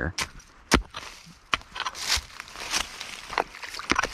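A short-handled digging tool chopping into a muddy creek bank to open a bait hole: about half a dozen sharp, irregular strikes into dirt and roots, with scraping of soil and dry leaves between them.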